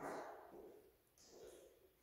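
Near silence with two faint short sounds: one at the very start that fades over about half a second, and a softer one just over a second in.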